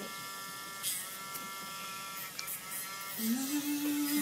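Small handheld rotary nail grinder running with a steady electric whine while trimming a parrot's nails; the pitch dips briefly about a second in as it bears on the nail.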